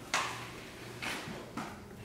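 A person biting into something: three short noisy bites, each quick to fade, the first right at the start and two more about a second in.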